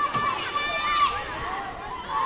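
Young children's high-pitched voices calling and shouting, with one long high call held for about the first second.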